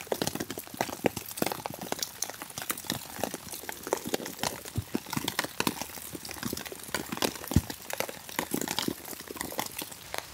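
Heavy rain falling: a dense, irregular patter of drops, some loud and close, over a steady hiss.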